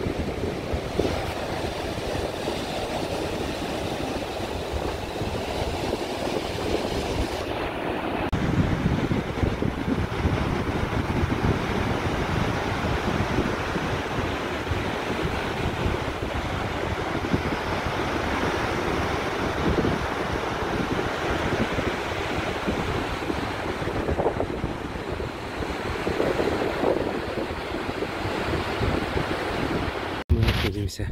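Baltic Sea surf breaking steadily on the beach and over the wooden groynes, with wind buffeting the microphone.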